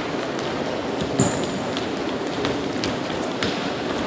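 Sneakers landing and patting on a hardwood gym floor as several players hop over mini hurdles, a scatter of quick irregular footfalls over the steady noise of a large gym. A brief high-pitched squeak stands out about a second in.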